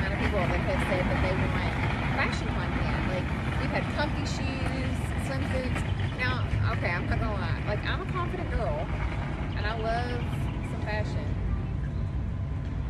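Women talking in conversation over a steady low rumble.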